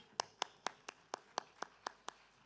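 A run of about nine sharp taps, evenly spaced at about four a second and slowly growing fainter.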